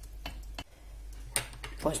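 A metal spoon scraping and tapping inside a stainless-steel mesh strainer as thick sauce is pushed through it, giving a handful of light clicks.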